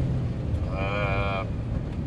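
Steady low rumble of a Jeep Cherokee XJ driving, heard inside the cabin. Less than a second in, a man's voice holds one drawn-out vowel for under a second.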